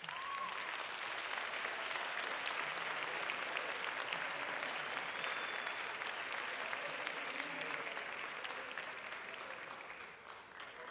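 Audience applause, which starts suddenly and fades off near the end.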